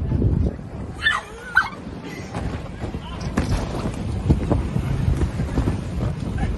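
Rumbling, buffeting noise on a phone microphone that is being jostled about, with a brief shout or squeal from voices about a second in.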